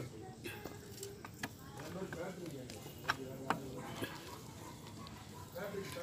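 Faint background voices, with a few small sharp clicks and soft handling sounds, the clearest two about halfway through, as fingers pull apart a grilled fish on a steel plate.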